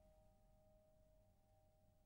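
Near silence: a single held piano note of the background music fading away.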